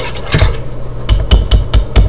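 Wire whisk stirring tomato sauce in a metal saucepan, its wires tapping against the sides of the pot; from about a second in the taps come in a quick, even rhythm of about five a second.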